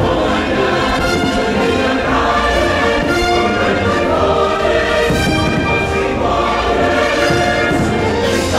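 Choir singing held notes with orchestral accompaniment, the fireworks show's patriotic soundtrack.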